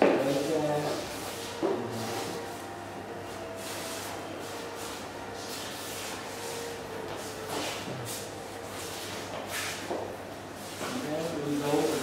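A few soft scuffs and taps of dancers' shoes on a wooden floor, with low voices at the start and again near the end.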